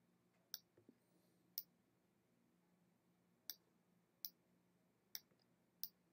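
Faint, sharp clicks of a computer pointer button, six of them spaced about a second apart, made while adjusting the Levels sliders in Photoshop.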